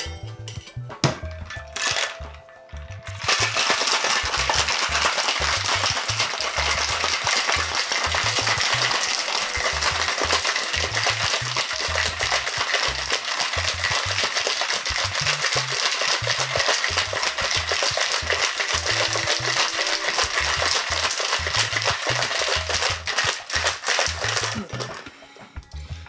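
Ice cubes rattling hard inside a stainless steel two-tin cocktail shaker in one long vigorous shake, starting about three seconds in after a couple of metallic clinks as the tins are fitted together, and stopping just before the end. The hard shake whips the cream of coconut and pineapple juice into a thick, frothy texture.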